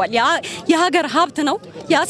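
Speech only: a woman talking quickly into a microphone.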